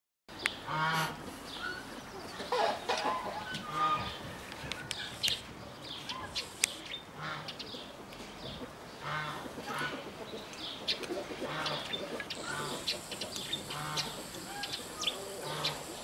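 Domestic fowl calling off and on: short calls every one to two seconds, with scattered sharp clicks between them.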